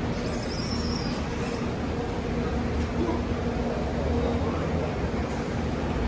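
Steady curbside road-traffic noise from cars stopped and passing, with a low, even engine-like hum.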